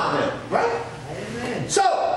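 A man's voice talking and calling out, without clear words.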